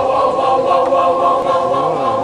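Choir singing a cappella, holding one sustained chord of several voices; near the end some voices glide in pitch as the chord moves.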